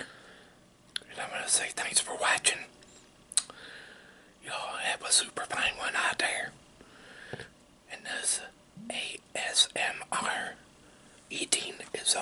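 A man whispering in several short phrases, with brief pauses between them.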